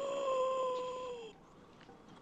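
A long held tone with overtones, wavering slightly, that bends downward and stops a little over a second in.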